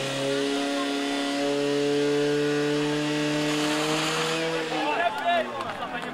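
The petrol engine of a portable fire pump runs steadily at high revs, pumping water through the attack hoses. About four and a half seconds in, its pitch sags slightly, and people shout over it near the end.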